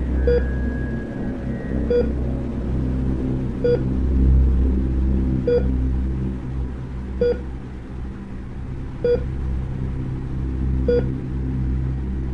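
Heart-monitor beep sound effect: a single short tone about every 1.8 seconds, seven times, over a steady low drone.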